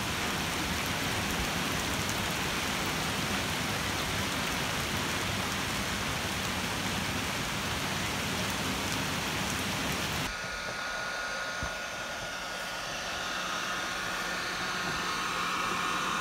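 Steady rain falling, an even hiss, which cuts off abruptly about ten seconds in. It gives way to a quieter steady hum with a faint high tone.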